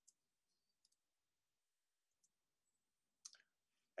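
Near silence: room tone with a few faint, short clicks, and one slightly stronger brief click near the end.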